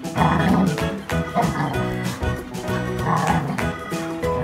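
Background music throughout, with golden retrievers barking while play-wrestling, heard twice: near the start and about three seconds in.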